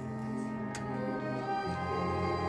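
Symphony orchestra playing classical music, bowed strings holding sustained chords, with a deeper bass note coming in near the end.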